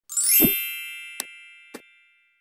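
Intro chime sound effect: a bright ringing chime with a low thud at its start, fading away, then two short clicks about half a second apart.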